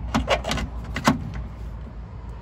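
A few sharp clicks and knocks as a cordless drill and its bit are handled in a freshly drilled hole in the Jeep Wrangler TJ's steel frame, with the drill not running. The knocks are bunched in the first second or so, the loudest just after a second in.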